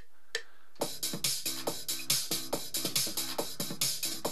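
A couple of metronome count-in clicks from FL Studio. About a second in, an electronic drum pattern starts, with a synth bass line played live over it on a MIDI keyboard as it is recorded.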